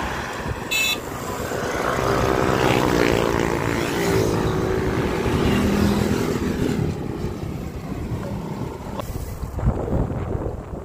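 A motor vehicle passing on the road beside the cyclists: its engine note swells, then falls in pitch as it goes by. A short high beep sounds just under a second in.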